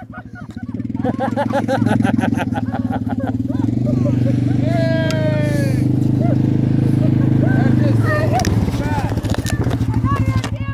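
Quad ATV engine running steadily while towing a rider on a rope, getting louder about a second in, with laughter over it and a falling yell near the middle.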